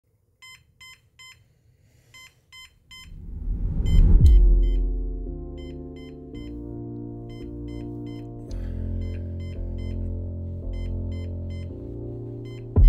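Digital alarm clock beeping in quick sets of three. About three seconds in, background music with deep sustained tones swells in, peaks loudly about a second later and carries on under the beeps.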